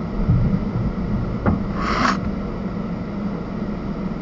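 Steady low engine and cabin hum of a car crawling at walking pace, heard from inside the car. There is a single click about one and a half seconds in and a short hiss around two seconds in.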